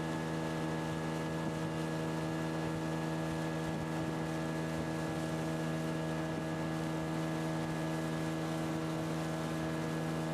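Boat's outboard motor running at a steady cruising speed, heard from aboard as a constant-pitched drone over a steady rush of water and wind.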